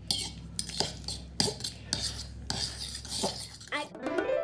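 Metal spoon stirring and scraping around a mixing bowl of mashed banana and egg, with irregular clinks of the spoon against the bowl.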